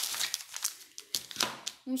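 Thin plastic carrier bag rustling and crinkling as groceries are pulled out of it, in a run of short irregular crackles that thin out briefly in the middle.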